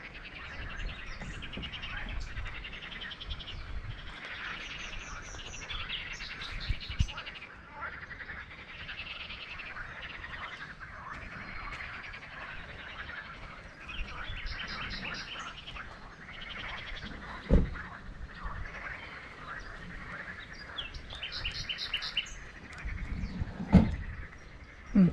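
A chorus of frogs and birds calling at the lake edge: continuous croaking and chirping, with rapid pulsed trills recurring every several seconds. A few dull thumps break in, the loudest a little past the middle and at the very end.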